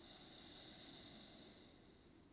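Near silence, with one faint, slow exhale of breath that fades out near the end.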